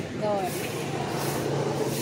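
Steady background hum of street traffic with a low engine drone, behind a single short exclamation at the start.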